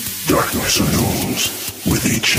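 Electronic dance music at a breakdown: the kick drum and bassline have dropped out, leaving irregular rumbling, crackling noise textures that sound like thunder and rain.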